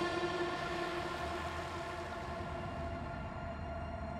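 A sustained drone of several steady tones sounding together like a held chord, slowly fading over a low hum.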